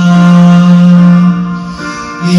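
A man singing a Japanese choral song (gasshōkyoku) at karaoke, into a microphone over the backing track, holding one long note that fades out near the end.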